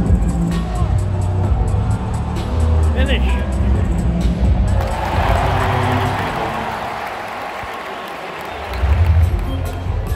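Arena sound system playing music with a heavy, pulsing bass beat over the crowd. About halfway through, the bass drops out and a broad swell of crowd noise takes over, then the bass beat comes back near the end.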